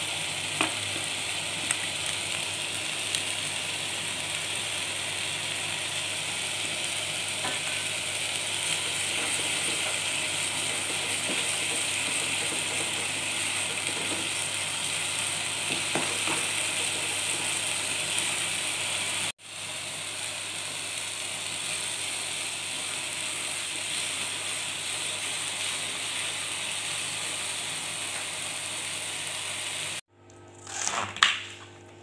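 Ground green-chili spice paste sizzling steadily in oil in a frying pan, with a few sharp clicks of a spatula against the pan. The sizzle cuts out for an instant about two-thirds of the way through, then goes on as before.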